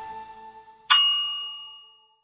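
A single bell-like ding sound effect about a second in, ringing out and fading over about a second, after the last of the background music dies away.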